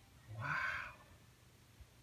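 A man's single short exclamation, "Wow!", about half a second in, then quiet room tone.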